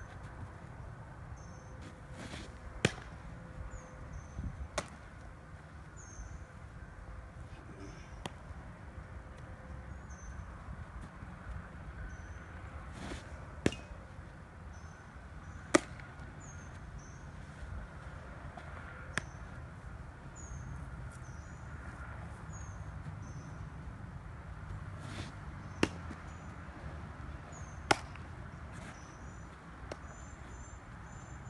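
Baseballs smacking into leather gloves during a bullpen session: sharp pops come in pairs about two seconds apart, three times over, with one lone pop between. The loudest comes near the middle.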